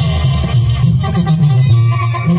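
Mexican banda music, a brass band playing with a bass line of held notes under a melody.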